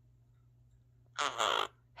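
A small blue parrot gives one harsh two-part squawk of about half a second, a little over a second in.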